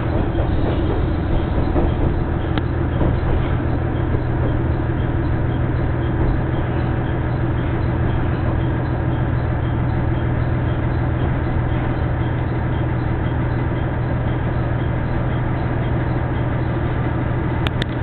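Diesel railcar heard from inside the cabin: a steady low engine and running hum as the train rolls into a station, with a couple of sharp clicks near the end.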